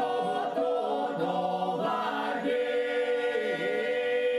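A mixed group singing a four-part Epirote polyphonic song a cappella: several voices hold a steady drone while the leading voices above it bend and dip in pitch.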